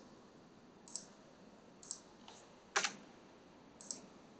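About five sharp computer clicks, roughly a second apart, over quiet room tone; the loudest, a close double click, comes near three seconds in.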